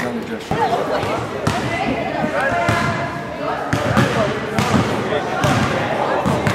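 Indistinct voices of several people talking at once, with irregular thuds scattered through.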